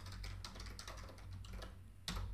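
Computer keyboard typing: a quick, faint run of key clicks, thinning out near the end, over a steady low hum.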